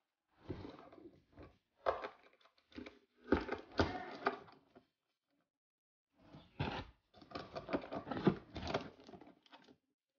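Aluminium foil crinkling, with light taps and knocks of cardboard, as a foil-covered cardboard tube is fitted onto a foil-wrapped box. The noises come in short clusters of rustles and clicks, with a pause of about a second midway.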